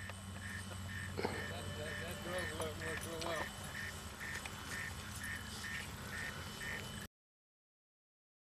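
Faint electronic beeping, about two short beeps a second, from the sonic alarm on a high-power rocket coming down under its parachute, with a distant voice briefly heard about two seconds in. The sound cuts off abruptly about seven seconds in.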